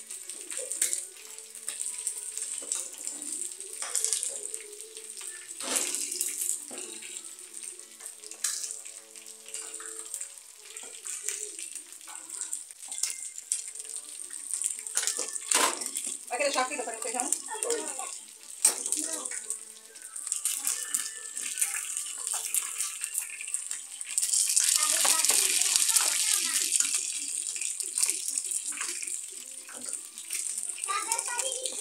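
Metal serving spoons scraping and clinking against aluminium pots and plastic plates as rice and beans are dished out, over a steady hiss, with a louder rush of hiss for about three seconds near the end.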